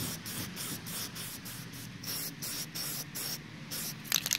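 Rust-Oleum Glow in the Dark MAX 2x aerosol spray paint can hissing as the nozzle is pressed, in a run of short sprays with brief breaks.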